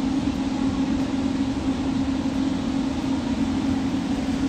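Steady indoor hum with one constant low tone over a rough low rumble, typical of a shopping cart rolling on a concrete warehouse floor against the store's air-handling noise.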